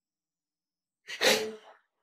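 A man sobbing while he cries: one short, breathy gasping sob about a second in.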